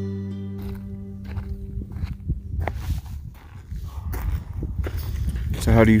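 Acoustic guitar music fades out in the first half-second. It gives way to wind buffeting the microphone and irregular footsteps crunching on dry ground.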